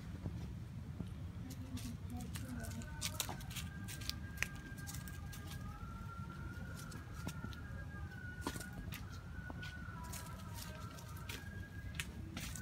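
Outdoor background: a low steady rumble with scattered sharp clicks, and a faint, slightly wavering high tone that starts about two seconds in.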